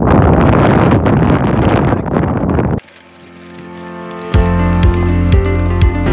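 Wind buffeting the microphone for nearly three seconds, cut off suddenly; then background music fades in, and a steady beat with heavy bass kicks starts about four seconds in.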